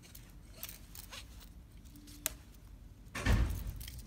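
Light handling sounds of nylon webbing and a small plastic buckle being fitted by hand: faint rustles and ticks, one sharp click a little over two seconds in, and a louder low rustle or bump near the end.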